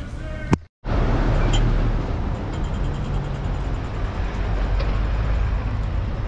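Road traffic: cars and vans driving along a city street, a steady rumble and hiss that starts abruptly after a click and a moment of silence just under a second in.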